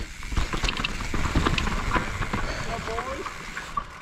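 Mountain bike (a 2019 YT Capra) riding down a rough dirt trail: tyre noise and the rattle and knocks of the bike over roots and rocks, with wind rushing on the helmet camera. The noise eases just before the end as the bike slows.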